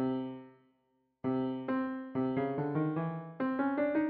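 FL Studio's Stage Grand sampled grand piano, played a note at a time from the computer keyboard. One note dies away, and after a short pause a string of single notes follows, coming quicker toward the end.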